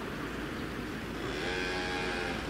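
Steady outdoor background noise, with an engine hum that fades in about halfway through and holds at a nearly even pitch.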